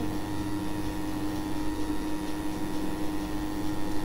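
Steady background hiss with a faint electrical hum of a few steady tones: the recording's noise floor between recited lines.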